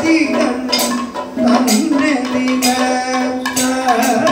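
Kathakali padam singing: a male voice holds long, sliding sung notes while the chenda and maddalam drums strike and small metal hand cymbals and gong clink in time.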